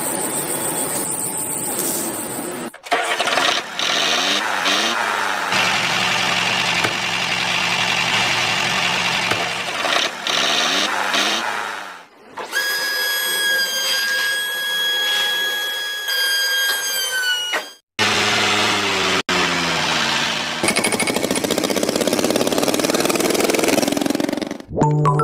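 Engine sound of a miniature model tractor running and revving, across several short clips cut together. In the middle, a steady high whine lasts several seconds and then drops off suddenly.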